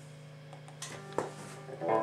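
Electric guitar amplifier humming steadily, with a few sharp pick-and-string clicks about a second in, then a guitar note struck loudly just before the end as the riff begins.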